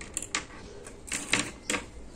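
Stitch markers being picked up and handled: a few short clicks, two near the start and two a little past halfway.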